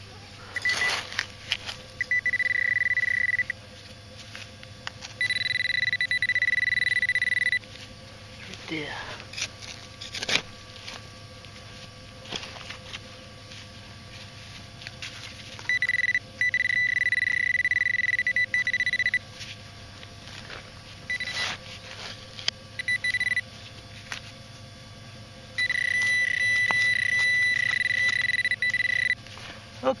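Metal-detecting pinpointer (Garrett Pro Pointer) sounding a steady high-pitched alert tone in several stretches of one to three seconds as it is probed through a dug soil plug to locate the buried target. Light scrapes and knocks of digging fall between the tones.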